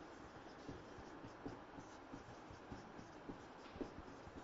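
Faint scratching of a marker writing on a whiteboard, in short irregular strokes.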